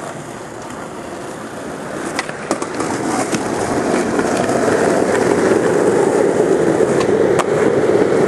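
Skateboard wheels rolling over rough concrete: a steady rumble that grows louder from about three seconds in, with a few sharp clicks along the way.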